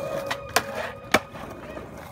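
Skateboard rolling on concrete, with two sharp clacks of the board about half a second apart.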